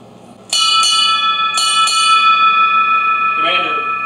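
Ship's bell struck four times in two pairs, each pair a quick double strike, with the ringing hanging on afterwards. These are the Navy's paired bell strokes that announce an officer going over the side, marking the retired commander's departure.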